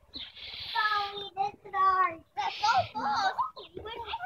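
Young children calling out in high, drawn-out, sing-song voices, in several short stretches.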